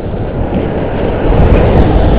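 Wind buffeting the microphone of a head-mounted camera on a moving bicycle: a loud rushing noise that grows louder about a second in, with a few faint clicks.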